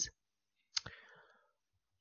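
A single short, sharp click about three-quarters of a second in, trailing off faintly, in an otherwise quiet pause.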